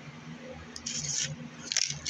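Two brief rubbing, scraping sounds about a second apart, from the phone and eyeliner pencil being handled close to the microphone, over a faint steady low hum.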